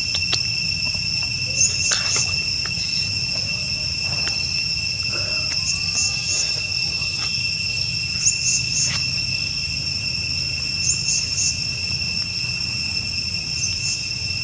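Steady chorus of insects: a continuous high-pitched ringing on several pitches, with a group of short chirps every few seconds.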